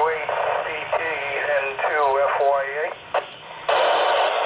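A voice received over a handheld FM radio through the ISS repeater: thin, narrow-band speech over hiss. It drops out briefly about three seconds in, then the hiss comes back louder near the end.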